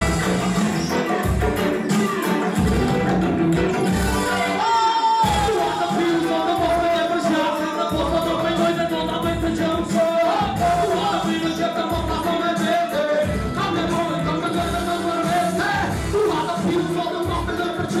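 Live hip hop music played loud through a club PA: a beat with a steady, regularly repeating bass kick under a melodic vocal line.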